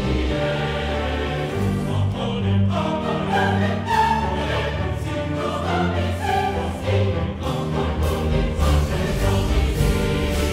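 Live orchestra and large chorus performing together: violins bowing while the choir sings, over held low bass notes.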